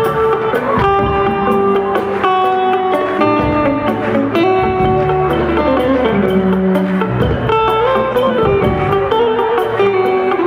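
Live band playing Guinean Mandingue music, with electric guitars carrying a stepping melody over a steady percussion pulse.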